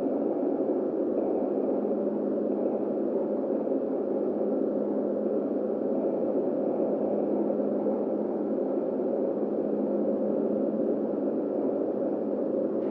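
Steady dark ambient drone for an abandoned-building soundscape: a dense, unchanging low rumble with a steady hum running under it.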